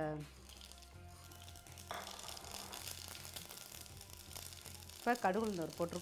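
Mustard seeds, cumin and split black gram sizzling in hot oil in an aluminium pan, starting suddenly about two seconds in: the tempering stage of South Indian cooking.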